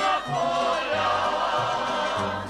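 A group of men singing a folk song together, accompanied by a tamburica string band whose plucked bass sounds short low notes at a steady beat.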